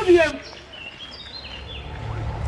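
A drawn-out, held vocal phrase cuts off in the first moment. Then a few short, high bird chirps sound over a low outdoor hush.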